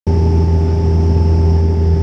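Cabin drone of a small turboprop airliner in flight, heard from inside the cabin: a loud, steady low hum with a few steady tones held at one pitch.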